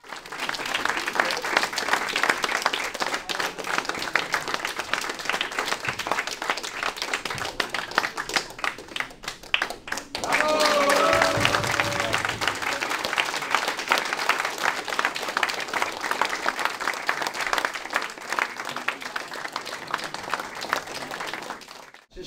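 A crowd of people clapping continuously, becoming louder about ten seconds in.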